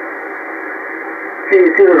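Shortwave receiver hiss heard in upper-sideband mode on the 10-metre amateur band: a steady, narrow, rushing noise during a gap in the transmission. A ham operator's voice comes back through the same receiver about one and a half seconds in.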